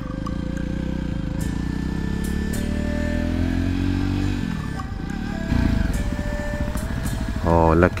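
Motorcycle engine pulling up through the revs, its pitch climbing steadily for about four seconds. The pitch falls away about four and a half seconds in, then climbs again.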